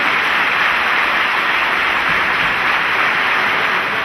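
Audience applauding, a steady dense clapping.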